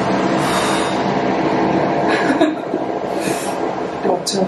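A loud, steady rushing noise from a machine running close by, with a faint hum under it and two short hissy bursts in the second half.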